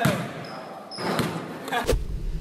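A basketball bouncing on a hardwood court: a few separate bounces, with voices around them.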